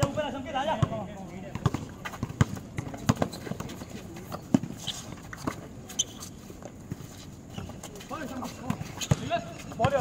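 A basketball bouncing on an outdoor concrete court and players' shoes on the concrete, giving a scatter of sharp thuds, with shouted voices at the start and again near the end.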